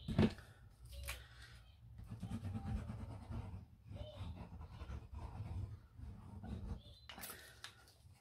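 Tombow liquid glue's applicator tip rubbing over black cardstock in zigzag strokes, a faint uneven scraping, with a knock just after it starts as the glue bottle is picked up and set on the card.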